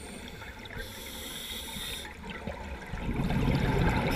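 A scuba diver's regulator breathing underwater: a hissing inhalation about a second in, then a low, swelling rumble of exhaled bubbles near the end.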